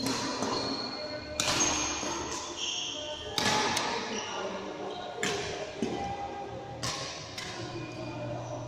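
Badminton rackets striking shuttlecocks: a sharp crack about every two seconds, echoing in a large sports hall, with short high squeaks of shoes on the court floor between the hits.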